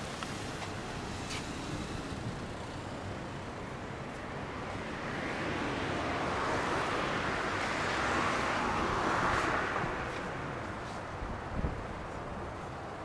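A vehicle passing on the road, its noise swelling from about halfway through and fading away near the ten-second mark, over a steady low rumble.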